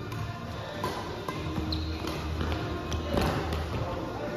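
Badminton rally: rackets strike a shuttlecock several times with sharp taps, the loudest cluster of hits about three seconds in, with players' feet moving on the court, over steady background music.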